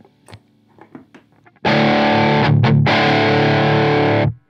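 Electric guitar played through a JHS Morning Glory V4 overdrive on its mid gain setting with the high cut switched on, into an amp's boosted clean channel: a few quiet plucks, then a loud overdriven chord strummed about a second and a half in and left ringing until it is cut off at the end.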